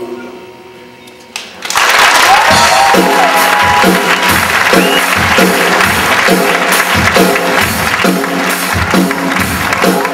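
Theatre audience applauding and cheering. It breaks out suddenly about two seconds in, as the last sung note dies away, over the live band playing a steady beat of about two strokes a second.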